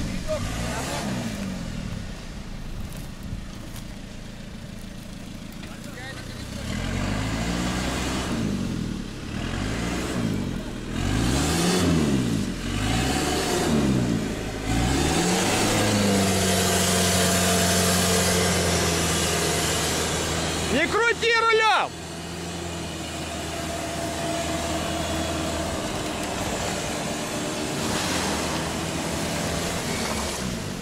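4x4 engines under load in a mud tow recovery: an engine revving up and down several times, then held at steady high revs for about ten seconds, with a brief high-pitched sound in the middle of that stretch.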